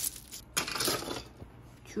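Hard plastic clicking and rattling of a 3D-printed articulated dragon's jointed segments as it is shaken and handled, with a sharp click about half a second in followed by a short rattle, then quieter handling.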